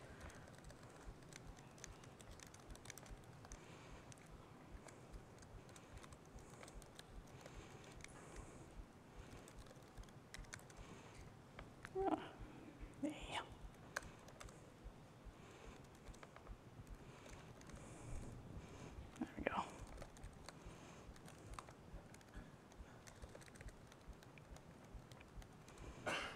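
Faint computer keyboard typing: a scattered run of quiet key clicks, with a few brief murmured words around the middle.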